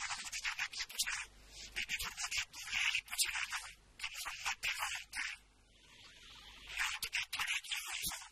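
A man's impassioned sermon-style speech through a microphone, heard thin and harsh with no low end, pausing briefly a little past the middle.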